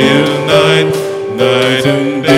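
Live worship band music: sustained chords held for a second or so at a time, changing a few times.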